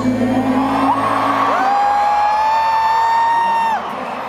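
Male lead vocal sung live: a lower line, then a swoop up into one long high falsetto note held for about two seconds that cuts off sharply near the end.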